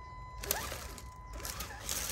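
Amewi Gallop 2 RC crawler's electric drivetrain running faintly as it crawls over rocks and dry leaf litter, with a small click about half a second in.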